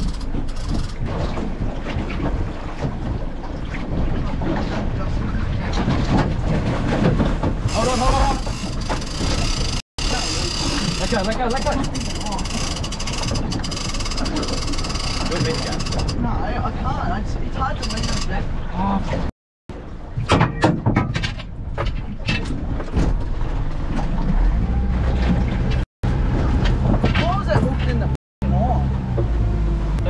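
Wind and a boat's motor running at sea, with occasional shouted voices; a steady low engine hum comes through clearly in the last quarter. The sound drops out abruptly a few times.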